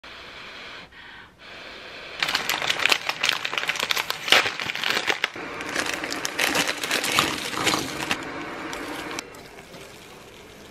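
Crinkling and crackling of an instant-noodle seasoning packet being handled and shaken over a ceramic bowl, a dense run of sharp crinkles starting about two seconds in and stopping shortly before the end.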